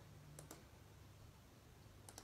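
Near silence with a low steady hum, broken by two faint, sharp clicks close together about half a second in.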